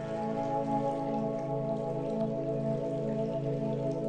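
Calm new-age background music: held chords with a gently pulsing low note, over a faint pattering like rain.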